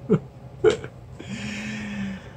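A man's short breathy chuckle, two brief catches of voice, then a held, breathy voiced sound on one pitch lasting about a second near the end.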